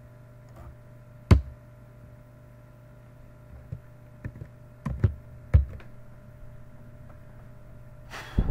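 Computer keyboard and mouse clicked a handful of times while deleting a line of code. There is one sharp click a little over a second in and several more between about three and a half and six seconds, over a steady low hum.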